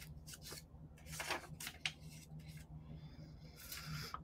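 Faint, intermittent rustling and scraping of paper and cardboard being handled during craft work, over a low steady hum.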